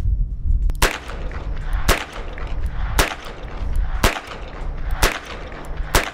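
Smith & Wesson Model 51 kit gun, a .22 Magnum revolver, firing six shots at a steady pace of about one a second, over a low rumble.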